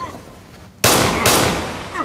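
Two loud sudden bangs, the second about half a second after the first, each with a long echoing decay.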